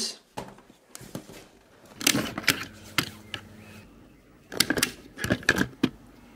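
Hard plastic clicks and rattles from a pannier's adjustable mounting hooks being handled and moved along the mounting rail, in two bunches: one about two seconds in and one near the end.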